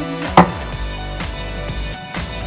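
A ceramic mug set down on a kitchen worktop with one sharp knock about half a second in, over background music with a steady beat.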